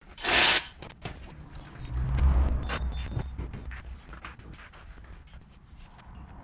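Shop handling noise: a loud scraping rush at the start, then a low rumble and scattered clicks and knocks as a wheeled engine hoist and a large bush-plane tire are moved about on a concrete hangar floor.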